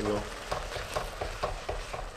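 Thick oat gruel sizzling and bubbling in a hot wok while a wooden spatula stirs it, with small ticks and scrapes against the pan.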